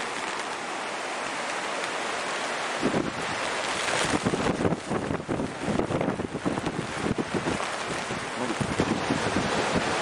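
Strong wind blowing, a steady rush that from about three seconds in is joined by irregular gusts buffeting the microphone with low rumbles.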